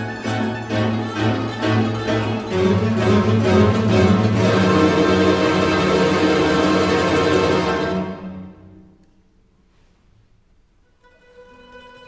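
A mandolin orchestra of mandolins, guitars and double bass plays a loud, full passage of rapidly repeated picked notes. It dies away about eight seconds in to a brief pause of near silence, and a soft, held passage begins again near the end.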